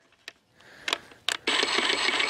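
Toro battery hedge trimmer, powered from a backpack battery, starting up about one and a half seconds in, its motor and reciprocating blades running with a high steady whine. A few sharp clicks come before it starts, while he is switching between the trimmer's speed settings.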